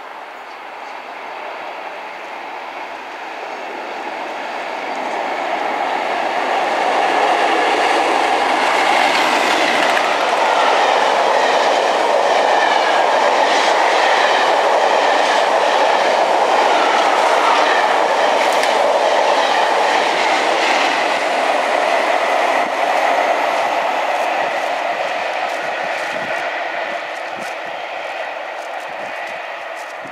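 Diesel-hauled passenger train passing, with locomotive-hauled coaches. Its noise builds over several seconds, holds loud with a rhythmic clickety-clack of wheels over rail joints, then slowly fades as it draws away.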